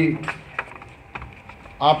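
A few light, scattered clicks in a pause between a man's speech, which trails off at the start and resumes loudly near the end.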